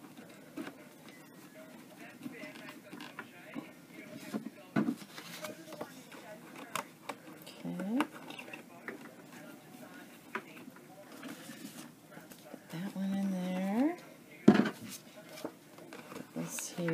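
Cardstock pages of a ring-bound handmade address book being flipped and handled: soft paper rustles with a few sharp clicks, the loudest about fourteen and a half seconds in. A short wordless murmur comes about eight seconds in, and a longer one, rising at the end, around thirteen seconds.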